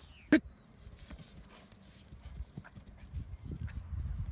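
Quick footsteps of an athlete's shoes patting and scuffing on artificial turf during a footwork drill. A short shouted command comes about a third of a second in.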